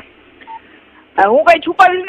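Phone-line recording: a pause in the call with one short beep about half a second in, then a voice talking again from a little after the first second.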